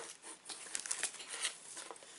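Packaging crinkling and rustling in irregular crackles as hands dig through the contents of a cardboard box, with a short tap right at the start.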